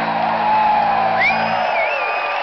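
A rock band's last chord held and then cut off about three-quarters of the way through, as a concert crowd cheers and whoops and someone whistles.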